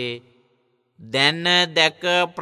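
Buddhist monk's voice chanting verses in long, held, melodic notes. The chant breaks off just after the start, leaves a short silence, and resumes about a second in.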